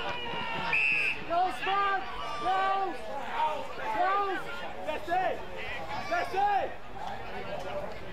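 Voices at an Australian rules football match shouting short calls, about one a second, over a low background of crowd chatter.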